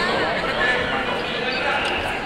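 Spectators' voices calling out around a boxing ring, with a few dull thuds from the fighters in the ring.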